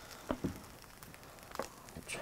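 Quiet electric-griddle frying with a faint sizzle, broken by a few light clicks and knocks of utensils.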